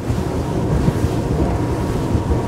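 Wind buffeting the microphone over the rush of water and engine noise of a maxi RIB running at full power, about 50 knots, on twin Mercury V12 600 hp outboards. A steady, dense noise with no breaks.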